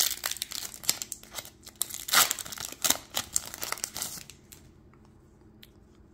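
Foil-lined wrapper of a Topps Gallery baseball card pack being torn open and crinkled by hand: a run of sharp crackles, loudest about two seconds in, that stops about four seconds in.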